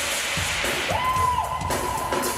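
Live pop-band concert music with drum kit, a singer holding one long high note from about a second in.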